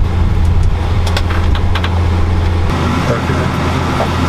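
A vehicle engine idling with a steady low drone, heard from inside the cab, with a few sharp clicks in the first two seconds.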